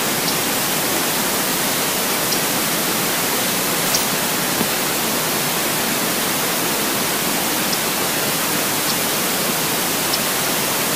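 Steady rushing of river water, an even hiss that neither rises nor falls. A few faint, short, high ticks sound over it.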